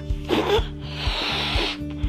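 A person takes a quick breath, then blows one long breath into a rubber balloon to inflate it, over background music with a steady beat.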